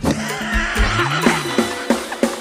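Live mor lam sing band music: a crash at the start, then drum strokes under a low tone that rises and falls and wavering higher tones.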